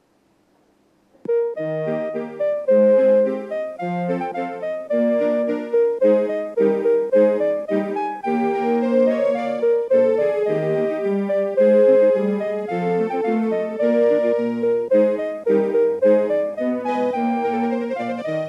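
EMPEX Super EX Melody Weather Station EX-5478 clock playing its hourly chime melody for the 'sunny' forecast, a chip-generated tune of electronic keyboard-like notes and chords from its Seiko NPC SM1350AAQM melody IC. It is played through a TOA BS-4W compact speaker and starts about a second in, after near silence.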